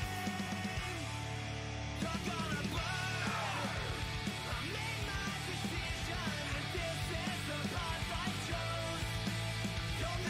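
Punk rock band playing: electric guitars, bass and drums, with a male voice singing and shouting from about two seconds in.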